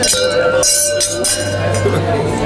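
Several stemmed wine glasses clinked together in a toast, their ringing tone lingering and fading.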